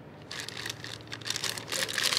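Small plastic zip-top bag crinkling as it is handled and turned over in the hand, in irregular crackles that start about a third of a second in.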